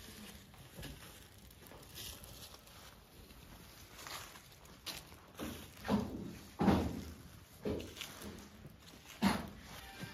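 A heavy section of tree trunk knocking against the ground as it is moved: about five dull thuds, each with a short tail, in the second half, after a quiet start.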